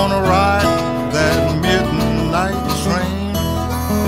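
Instrumental passage of acoustic Piedmont blues: fingerpicked acoustic guitar under a harmonica playing quick bent notes, with no singing.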